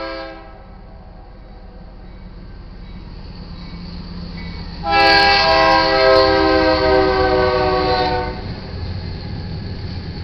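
Air horn of a BNSF GE Dash 9-44CW locomotive leading a freight train: a blast ends about half a second in, then one long blast of about three seconds sounds as the train reaches the crossing. Its chord is loud over the rising rumble of the approaching train.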